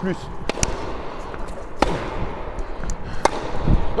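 Tennis rally on an indoor hard court: a Wilson Clash V2 racket and an opponent's racket striking the ball hard, with the ball bouncing between shots. Sharp pops come a second or more apart and echo in the hall.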